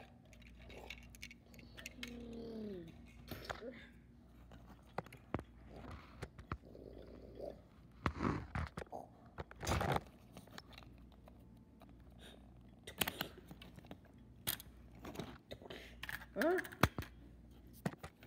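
Toy cars being handled and pushed around: scattered knocks and scrapes of small plastic and die-cast vehicles bumping on the floor and against a stack of books, with a short falling hum from a voice about two seconds in.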